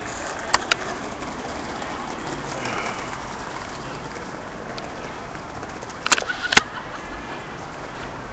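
Downtown street background noise, steady, with two sharp clicks about half a second in and a short cluster of clicks and knocks about six seconds in.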